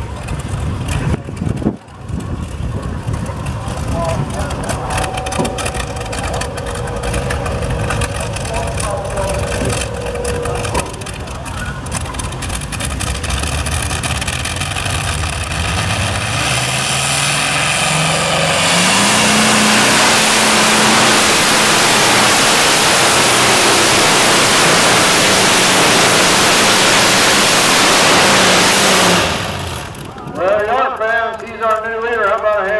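Modified pulling tractor powered by an aircraft radial engine. It runs at lower power at first, then about halfway through its pitch rises as it opens up to full power and runs loud and steady for about ten seconds while pulling the sled. It cuts back sharply near the end.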